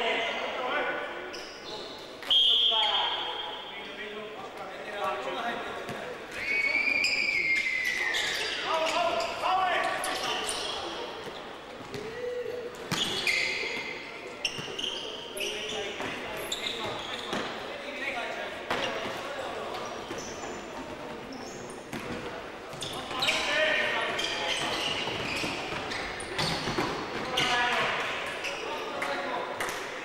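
Futsal match play in an echoing sports hall: players shouting to each other, with the ball being kicked and bouncing on the wooden court in frequent short knocks.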